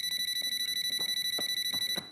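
Cellphone ringing: a high electronic trill, one steady tone warbling about ten times a second, which stops near the end.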